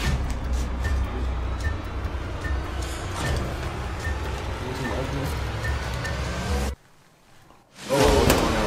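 Dark background music: a steady low drone with a soft high ping about every 0.8 s. It cuts off suddenly near the end.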